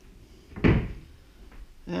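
White cupboard doors pushed shut, with one sharp knock a little over half a second in.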